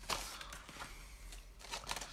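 Soft rustling and light handling noise from cardboard-and-plastic die packaging being moved about by hand, with a small bump near the end.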